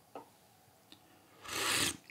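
A faint click as a small porcelain tasting cup is lifted, then about one and a half seconds in a short, airy slurp lasting about half a second as green tea is sipped from the cup.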